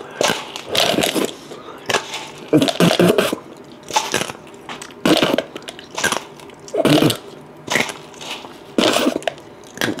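Dry, uncooked macaroni pieces cracking one after another between the teeth, about once a second, with short vocal sounds from the person biting in between.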